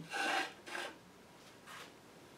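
Three short rubbing, scraping sounds of a wax-soaked leather piece being moved from a small crock pot and laid on a cloth. The first is the loudest, and a fainter one comes near the end.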